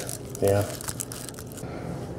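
Quiet handling noise, with light crinkling and a few small faint clicks, as a folding knife and its plastic wrapping are handled.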